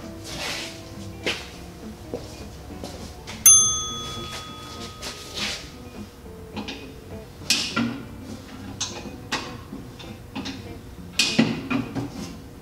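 A single bright, bell-like ding about three and a half seconds in, ringing with several clear overtones and fading over a couple of seconds. Around it come short hisses and soft knocks from handling a screen printing press's hinged screen frame, over faint background music.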